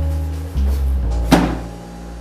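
Slow film-score music with held low bass notes that shift in pitch. About a second and a half in comes a single sharp thump: a cardboard box set down on a desk.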